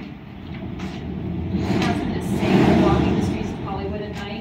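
A passing vehicle's rumble that swells to its loudest about two and a half seconds in and fades again.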